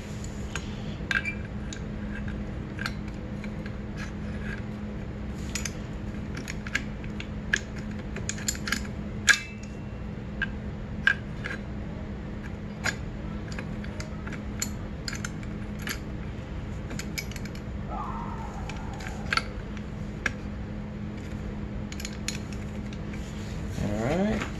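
Scattered metal clicks and taps as a homemade clutch holding tool, locking C-clamp pliers with welded steel C-channel jaws, is fitted against a dirt bike's clutch basket and hub, over a steady low hum.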